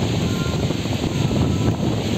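Wind buffeting the phone's microphone with sea surf behind it: a steady, rumbling noise.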